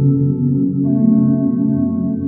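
Mubert-generated lo-fi ambient music of held, layered tones; the chord changes just before a second in.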